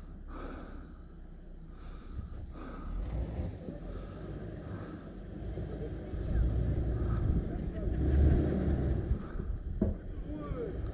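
A Jeep's engine labouring as it crawls over trail rocks, a low rumble that grows louder in the second half as the Jeep draws nearer.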